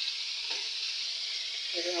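Chicken pieces with tomato, onion and garlic sizzling steadily in a hot stainless steel wok while being stirred with a spatula, a sauté at the start of cooking.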